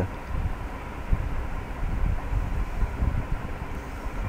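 Steady low rumbling background noise with no speech, uneven but without any distinct event standing out.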